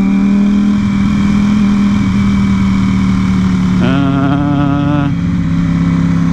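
A motorcycle engine runs at a steady, unchanging pitch with road and wind noise. About four seconds in, a second steady tone at a slightly higher pitch sounds for about a second.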